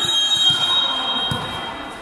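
Volleyball referee's whistle: one long, shrill blast lasting about a second and a half, the signal that authorises the serve. A few low thuds sound under it.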